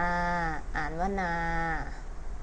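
A woman's voice slowly pronouncing Thai syllables, drawing out the long vowel 'aa' on each. Two long held syllables at a fairly level pitch, with a short break between them.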